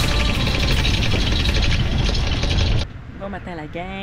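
Electric anchor windlass running, hauling in chain, until it cuts off suddenly near the end, followed by a woman's voice.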